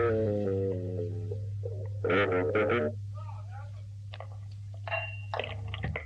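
A rock recording ends on a held note that slides down in pitch and dies away over about two seconds. A steady low electrical hum is left, with short bursts of voices in a small room.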